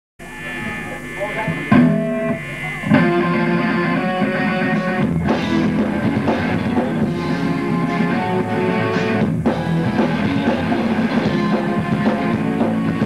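Live rock band playing electric guitars, bass and drums, with a quieter opening that jumps to full volume about three seconds in.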